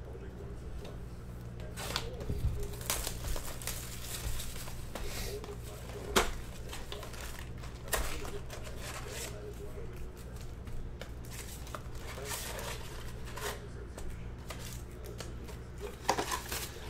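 Plastic shrink wrap crinkling and tearing off a sealed Panini Prizm basketball card box, then the cardboard box being opened and foil card packs rustling as they are lifted out. Irregular crackles run through it, with a sharper snap about six seconds in, over a steady low hum.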